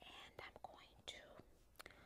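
A woman whispering faintly in short breathy bursts, a mock ASMR whisper.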